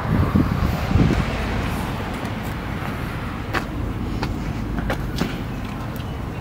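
A car engine idling: a steady low rumble, with two louder thumps in the first second and a few light clicks later on.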